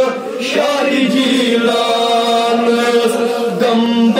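Male voices chanting a Kashmiri naat, a devotional poem in praise of the Prophet, in long held notes.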